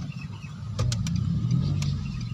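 A car's engine running, heard from inside the cabin as a steady low hum, with a few light clicks about a second in and again near the end.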